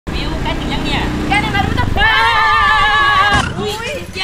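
A small motorcycle engine running under voices crying out, then a long, loud, wavering scream lasting about a second and a half as the bike runs into a parked car.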